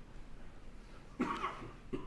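Quiet room tone, then about a second in a single short cough.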